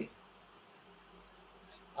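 Near silence: faint steady room tone with a low hiss in a pause between a man's spoken phrases.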